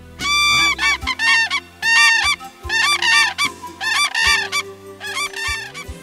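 A flock of common cranes calling: loud, repeated trumpeting calls that overlap one another, over soft background music.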